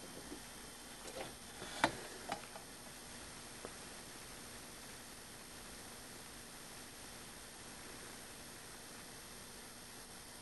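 Steady faint hiss with a handful of small clicks and taps in the first four seconds, the loudest about two seconds in.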